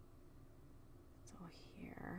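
Near silence: faint room tone, with a soft voice starting near the end.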